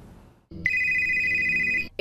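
A telephone ringing: one high-pitched ring lasting just over a second, starting about half a second in. It signals an incoming call.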